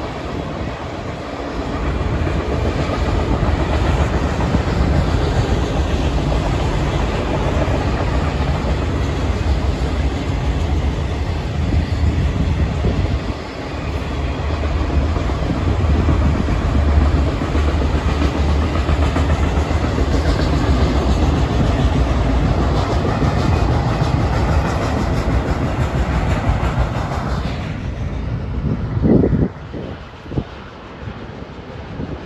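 Union Pacific autorack freight cars rolling past, a steady rumble and clatter of steel wheels on rail. The sound dips briefly midway and falls away near the end as the train moves off.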